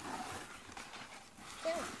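A person's short, soft laugh near the end, after a brief rustle at the start.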